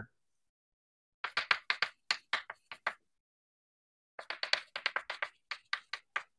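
Chalk writing on a chalkboard: two runs of short, quick taps and scratches, the first starting about a second in, the second from about four seconds in.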